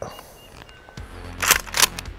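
Two sharp metallic clacks about a third of a second apart, a pump-action shotgun's slide being racked to chamber a shell. Background music starts underneath about a second in.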